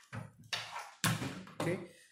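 Handling noise: power cables and plastic Molex connectors rustling and knocking, with a light tap as a graphics card is set down on a wooden desk.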